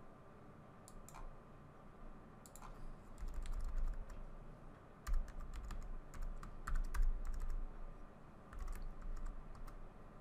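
Typing on a computer keyboard in several short bursts of keystrokes, a user name and password being entered.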